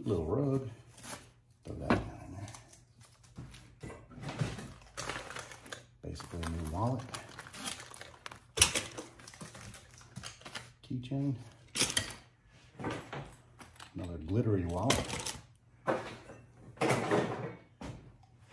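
Household items being handled and set down while a box lot is sorted: scattered short knocks, clicks and rustles, with a man's low voice in between.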